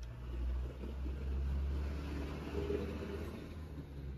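A low, steady rumble that swells through the middle and eases off near the end.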